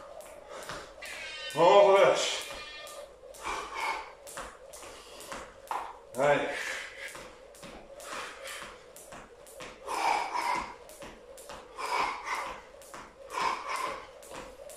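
Jump rope slapping a tile floor in a rapid, even rhythm as the rope turns, with the light landings of the jumper's feet. A man's voice is heard briefly about two seconds in and again about six seconds in, louder than the rope.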